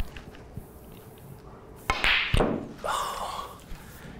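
Snooker shot: two sharp clicks about half a second apart, the cue tip striking the cue ball and then the cue ball hitting an object ball, followed by the balls rolling on the cloth.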